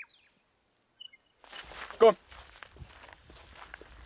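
A voice calls "Come" once, about halfway through, over faint outdoor rustling and steps. Before that there is a brief quiet stretch with a couple of faint high chirps.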